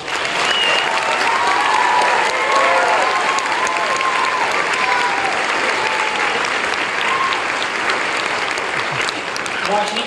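A hall audience and the choir applauding, with voices calling out and cheering over the clapping for the first several seconds.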